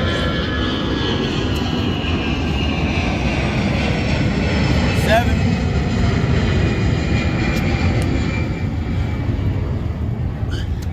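Aircraft passing overhead: a loud, steady rumble with a whine that falls slowly in pitch.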